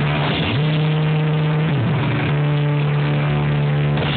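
Punk band playing live: distorted electric guitars and bass hold a loud low note that slides up in pitch about half a second in and slides down and back up around the middle, over a dense wash of cymbals and drums.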